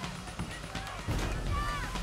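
Faint voices calling out, over a low background rumble.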